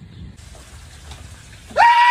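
A man's startled, high-pitched scream, one short held cry that starts near the end, over a faint hiss.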